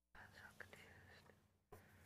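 Near silence: faint room tone with a low steady hum and faint murmured voices.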